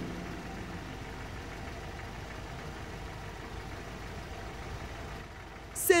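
Car engine and road noise as a limousine drives along: a steady low hum.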